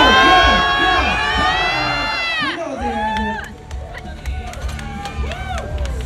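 Spectators and teammates yelling encouragement during a heavy competition squat: loud, held shouting from many voices for about two and a half seconds, then dropping to scattered shorter shouts and cheers.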